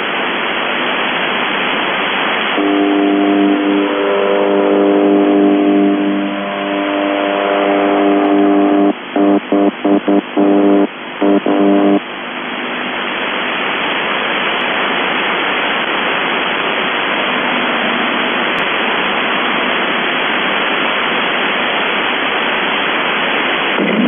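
UVB-76 'The Buzzer' on 4625 kHz received over a shortwave radio: a low, steady buzzing tone with a stack of overtones rises out of heavy static about two and a half seconds in, breaks up several times, and cuts off about twelve seconds in. After that only the hiss of shortwave static remains.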